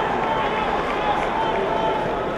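Crowd of spectators: many overlapping voices, a steady din with no single voice standing out.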